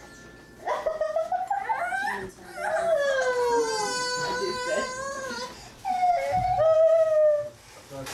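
A baby crying in three drawn-out, wavering wails, the middle one the longest.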